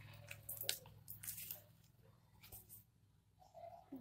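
Faint crinkling and squishing of a sheet mask packet being handled and the wet, serum-soaked fabric mask drawn out, mostly in the first two seconds.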